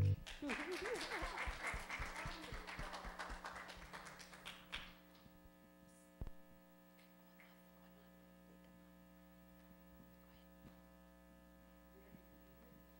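Clapping right after a song ends, dense at first and fading out over about five seconds. A single knock follows about six seconds in, then a faint steady mains hum.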